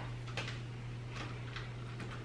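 A few faint light clicks as a phone is fitted and adjusted in a clamp-style phone holder on a tripod head, over a steady low hum.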